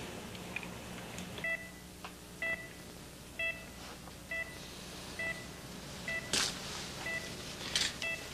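Hospital patient monitor beeping steadily, about one short electronic tone a second. A brief breathy hiss sounds about six seconds in.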